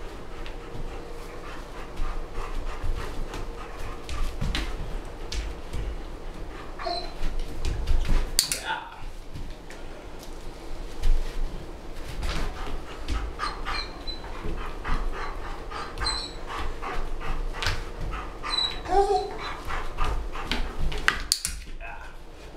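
A German Shepherd Dog moving about and stepping onto books during clicker training: a string of sharp clicks from a training clicker marking her moves, with panting and a few brief whines.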